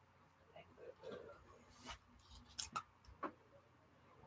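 Near silence, broken by a handful of faint, short clicks and taps from handling paint brushes and small plastic figures at a painting table.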